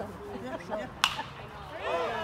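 Baseball bat hitting a pitched ball: one sharp crack about a second in, with a brief ringing after it. The hit goes up as a pop fly to left field.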